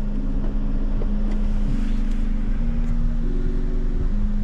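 A low, steady rumble inside a car cabin, with sustained low tones that shift pitch in steps every half second to a second.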